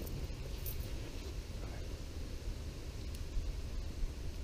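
Steady low outdoor background rumble with a few faint ticks.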